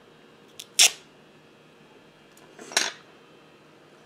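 Two sharp clicks from a makeup product being handled: a loud snap about a second in, then a shorter, rougher clack just before three seconds.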